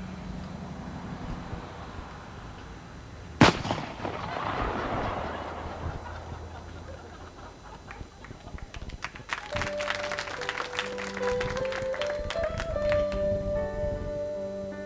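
A single sharp gunshot about three and a half seconds in, followed by a short noisy stretch. From about nine and a half seconds a grand piano starts playing.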